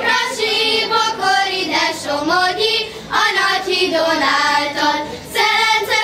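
A children's group of girls singing a Hungarian folk song together, the melody broken by short pauses between phrases.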